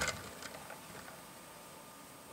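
A light knock, then the faint rolling of a LEGO pickup truck's rubber balloon tyres across a flat tabletop, dying away within about a second into quiet room hiss.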